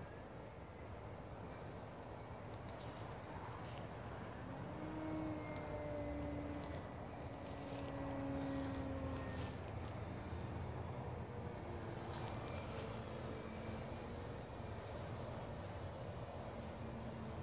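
Remote-controlled model airplane flying overhead: a distant droning motor whose pitch wavers slightly, growing louder about halfway through and then easing off a little.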